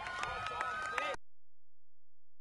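Spectators shouting and clapping to celebrate a soccer goal, with sharp individual claps over the voices. The sound cuts off abruptly just over a second in, leaving only a faint low hum.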